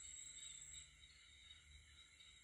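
Near silence with a faint, steady high-pitched chirring of night insects such as crickets; its highest part fades out about a second in.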